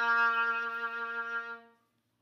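Violin sustaining one long bowed low B-flat on the G string, played as a whole note, the final note of a two-octave B-flat major scale. It holds a steady pitch and fades out about three-quarters of the way through.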